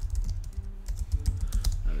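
Computer keyboard typing: a quick run of key clicks as a sentence is typed out.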